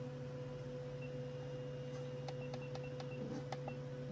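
A steady low electrical hum with a thin constant whine, and a few faint clicks in the middle of the stretch.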